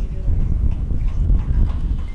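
Uneven low rumble of wind buffeting an outdoor microphone, with faint voices in the background.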